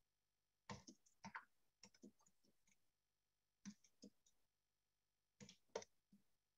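Near silence with faint, short clicks in small clusters, scattered through the few seconds.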